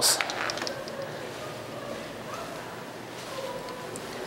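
Steady background noise of distant street traffic coming in through broken windows, with a few soft knocks and rustles right at the start.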